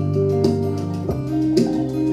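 Live band playing an instrumental passage: bowed violin with guitar and bass, sustained notes changing about every half second, no vocals.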